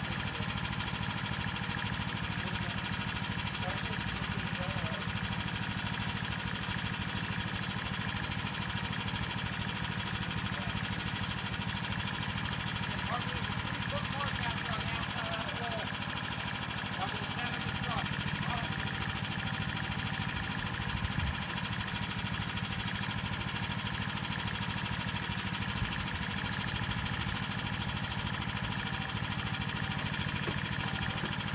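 An engine runs steadily, with faint voices in the distance and a couple of short knocks past the middle.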